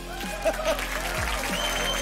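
Studio audience applauding and cheering over the show's background music, with deep falling tones in the music about a second in and again near the end.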